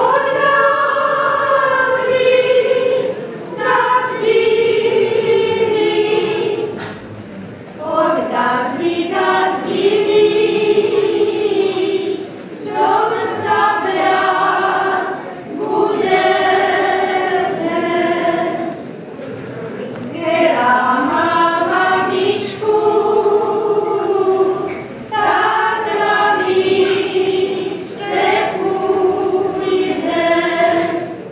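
A group of women singing a Moravian folk song together without instruments, in phrases of a few seconds with short breaths between them.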